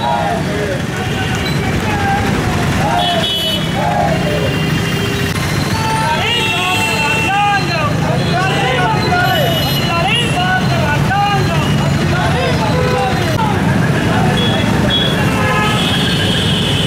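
Busy street sound: several people's voices talking over a steady rumble of road traffic, with vehicle horns sounding briefly a few seconds in and again near the end.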